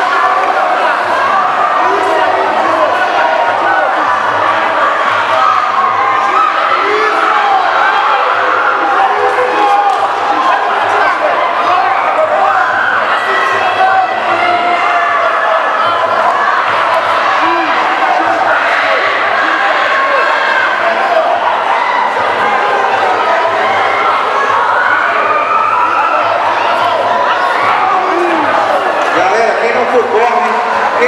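Ringside crowd at a Muay Thai fight, many voices shouting and cheering over one another without a break.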